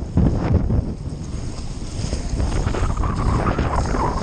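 Wind rumbling hard on the microphone of a Hobie 20 catamaran under sail, with water rushing along the hulls and some short knocks.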